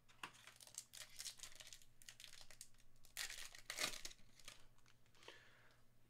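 Faint crinkling and tearing of a foil trading-card pack being opened, with glossy cards sliding against each other as they are handled, loudest about three seconds in.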